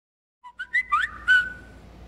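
Smartphone sounding a quick run of electronic chirps: four short tones, several sliding upward in pitch, the last one held for about half a second.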